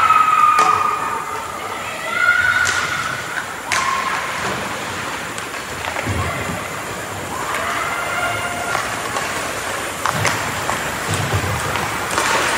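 Ice hockey play in an echoing indoor rink: voices shouting out in held calls several times, with sharp clacks of sticks and puck and a few dull thuds against the boards.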